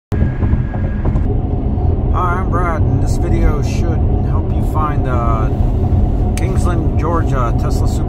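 Steady low road and tyre rumble inside a Tesla's cabin at highway speed, with no engine note from its electric drive. A man's voice starts talking over it about two seconds in.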